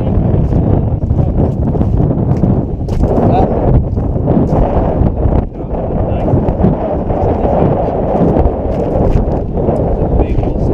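Wind buffeting the microphone, a loud, dense rumble, with the crunch of boots stepping on a gravel road.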